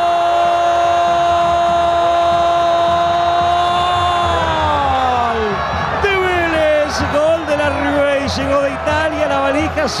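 A football TV commentator's goal cry: one long held "gol" on a single note for over five seconds, which slides down in pitch and dies away, followed by excited shouted commentary.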